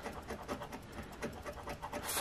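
A metal scraper rubbing the latex coating off a $30 Ultimate Riches scratch-off lottery ticket, in quick repeated strokes about five a second, uncovering a prize spot.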